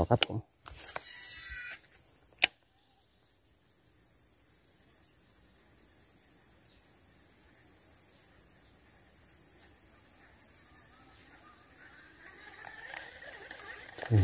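A cast with a baitcasting reel: a short whirr as line pays out from the spool, then one sharp click about two and a half seconds in. After that, faint steady high-pitched insect chirring.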